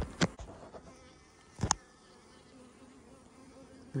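Honeybees buzzing around an open hive, stirred up by the inspection. A sharp knock right at the start, a smaller one just after, and another at about a second and a half in.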